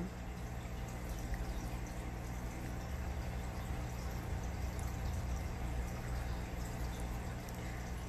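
Steady trickle and bubbling of aquarium water, with a low, even hum from the tank's running equipment.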